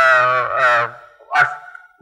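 A man's voice holding a drawn-out hesitation sound for about a second, then one short syllable: a lecturer's filler speech, heard through a hall's sound system with some echo.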